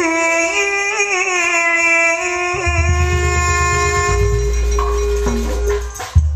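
Sundanese jaipong music: a single loud melody line holding long notes and sliding between them, with a low rumble joining underneath about halfway through.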